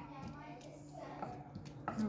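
Faint, low speech over a steady low hum, with a couple of soft knocks near the end.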